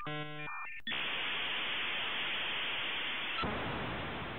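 A brief buzzy electronic tone in two short pulses, then, about a second in, a steady hiss of white noise like static that takes on more low rumble near the end.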